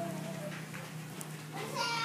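A newborn baby's brief, high-pitched whimper near the end, over a faint steady low hum.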